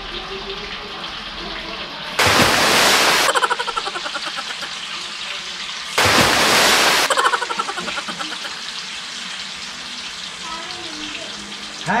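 Tofu cubes dropped into hot oil in a frying pan: a loud burst of sizzling about two seconds in and again about six seconds in, each fading back to a steady low sizzle.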